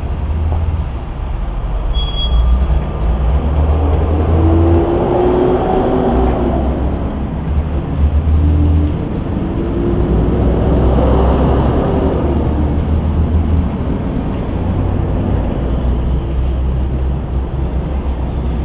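Road traffic: a steady low rumble, with two vehicles swelling up and passing, one around four to seven seconds in and another around ten to thirteen seconds.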